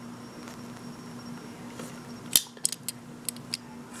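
Small clicks from handling a die-cast toy car: the opening hood of a Greenlight '69 Mustang Boss snapped shut about two seconds in, followed by a few lighter ticks of fingers on the car, over a faint steady hum.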